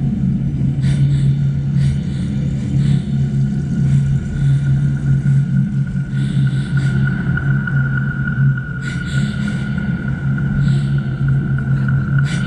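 Sound-design drone: a loud, steady low hum with a thin high tone that grows louder from about halfway through, and scattered short soft hisses.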